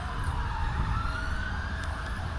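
A siren wailing: its pitch slides slowly down and then rises again, over a steady low rumble.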